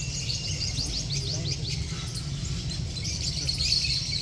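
Small birds chirping, many short quick falling chirps in rapid succession, over a low steady rumble.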